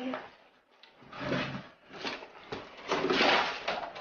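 A sharp knock and then about a second of wooden scraping, as of a wooden door or board being moved, with a muffled voice earlier on.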